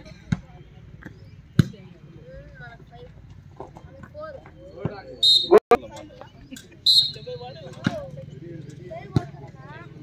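Volleyball rally: sharp smacks of hands striking the ball every second or two, over steady crowd chatter, with two short shrill whistles around the middle.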